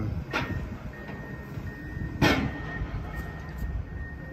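Construction-site background noise: a low rumble, one sharp bang a little over two seconds in, and a faint high steady tone that stops and starts.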